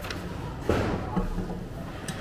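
A glass bottle being taken in by a reverse vending machine, with a dull thud a little under a second in as the machine accepts it.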